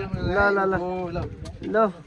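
Several men's voices talking over one another, some syllables drawn out, with a short loud call near the end.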